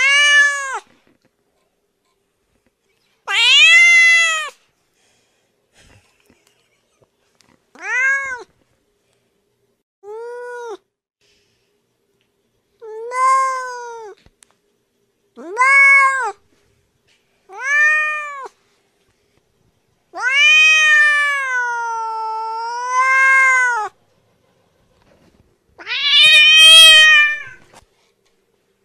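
Domestic cat meowing: nine separate meows a couple of seconds apart, each rising then falling in pitch. One drawn-out meow about two-thirds of the way through dips in pitch in the middle.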